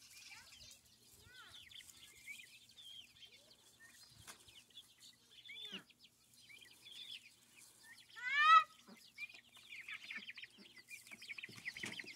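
Young chickens calling softly: scattered short high chirps and clucks, with one louder call about eight seconds in.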